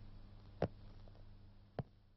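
Faint steady hum with two short, sharp taps, one a little over half a second in and the other near the end.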